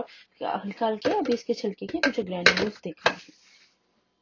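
A woman speaking for about two and a half seconds, then a single sharp click, then quiet.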